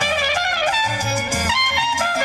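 Instrumental salsa music: a violin playing a melody line with trumpet over a bass line.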